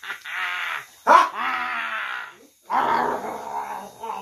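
Three drawn-out, wordless voice sounds, each about a second long, with a wavering pitch.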